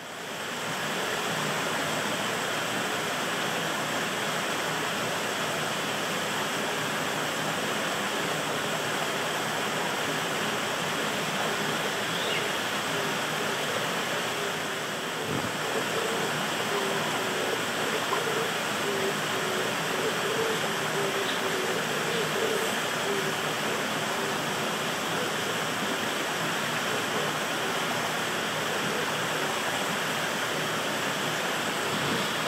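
Steady rushing noise, like running water, throughout. A faint low wavering tone sounds for several seconds past the middle.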